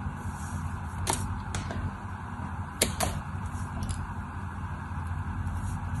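A small knife carving a dry, brittle bar of soap, with about five sharp cracks as chips snap off, two of them close together near the middle. A steady low hum runs underneath.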